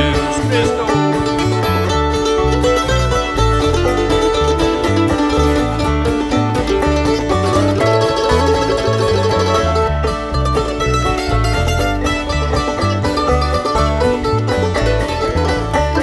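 Bluegrass band playing an instrumental break, with five-string banjo, mandolin and guitar over a steady bass line.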